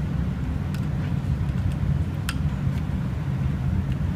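A few light clicks from handling the heart rate monitor board, the sharpest about two seconds in as its power is switched on, over a steady low rumble of room noise.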